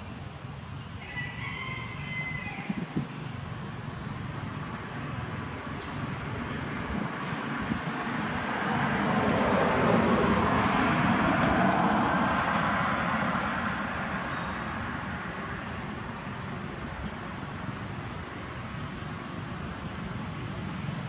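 A short pitched call, like a rooster's crow, about a second in. Then a passing vehicle's rushing noise swells to a peak near the middle and fades away.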